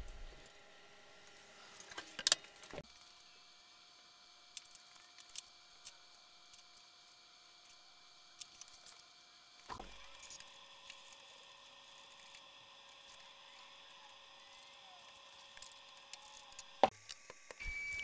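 Sparse, faint metallic clicks and taps of a hex key and bolts handled against a 3D printer's aluminium frame during assembly, over a low steady hum.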